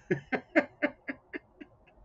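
A man laughing: a run of about eight short 'ha' pulses, roughly four a second, fading toward the end.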